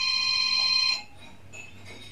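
An electronic beep: a steady chord of several high tones lasting about a second, then cutting off suddenly.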